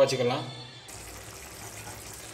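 Dry fish curry simmering in an aluminium kadai on the stove: a steady soft hiss of the thick gravy bubbling, starting about a second in after the end of a spoken word.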